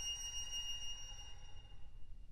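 A single high violin note, soft and thin, fading away and dying out near the end.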